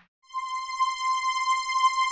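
Outro music: a single held, buzzy synthesizer tone with many overtones, starting a quarter second in after a brief moment of silence.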